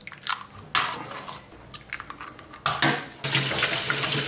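A few sharp knocks as eggs are cracked into a bowl, then a kitchen tap running into a stainless steel sink from about three seconds in, with hands rinsed under the stream.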